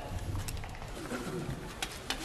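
Low murmur of several voices in the chamber, with two faint clicks, one about a quarter of the way in and one near the end.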